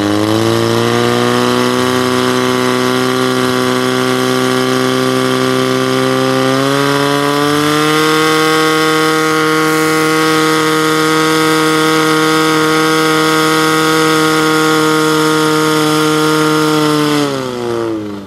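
Portable fire pump engine running hard under load, pumping water through the hoses to the nozzles. Its pitch steps up about six seconds in and holds steady, then drops and fades near the end as the engine is throttled down.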